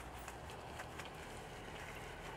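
Faint wet scrubbing of a soapy microfiber wheel brush worked over a car wheel's spokes, with a few soft, irregular squishes and ticks.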